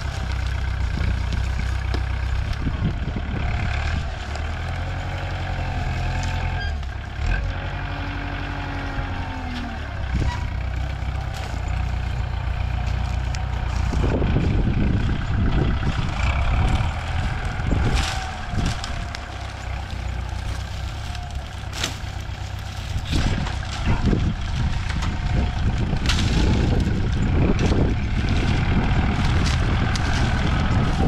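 Diesel engine of a tractor-mounted sugarcane grab loader running steadily, its revs rising and falling as the hydraulic boom works, louder in the second half, with a few sharp knocks.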